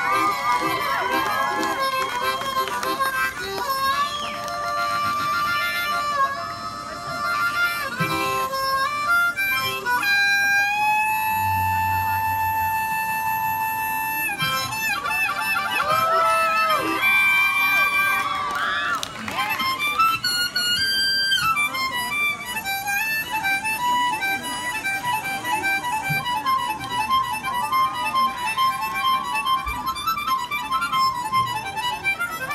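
Harmonica played solo: a wavering melody of bending notes, with one long held note about a third of the way in and quick, evenly repeated notes near the end.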